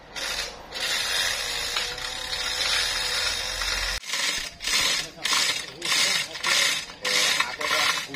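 Manual chain hoist being hauled to lift a heavy log: the chain rattles through the block and its ratchet clicks. First it comes as a continuous rasp, then in regular strokes about two a second.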